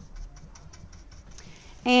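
Paintbrush bristles stroking back and forth over the wet paint on an end table, a faint run of quick scratchy ticks as the paint is blended.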